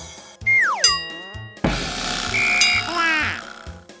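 Cartoon sound effects over children's background music with a low, steady beat. Just under a second in there is a quick falling whistle-like glide ending in a click. It is followed by about two seconds of hissing, rushing noise with a short beep and a flurry of rising tones as paint pours into the cart.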